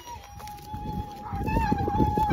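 Squeaky wheelbarrow wheel giving a steady, slightly wavering high squeal as it is pushed. The rumble of rolling and footsteps over the dry, straw-strewn ground grows louder about halfway through.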